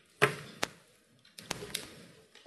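A few sharp knocks and clicks: a loud knock about a quarter second in, a second one shortly after, and a quick run of smaller clicks in the second half, picked up by a close microphone.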